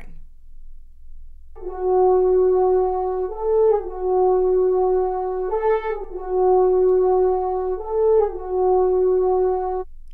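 A French horn plays long, held, mellow notes, stepping up briefly to a higher note and back three times. It starts about a second and a half in and stops just before the end.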